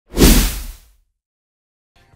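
A single whoosh sound effect with a deep low rumble beneath it, rising fast and fading out within about a second, then silence.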